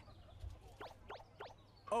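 Four faint, quick whistle-like chirps sliding in pitch from the animated episode's soundtrack, over a low hum.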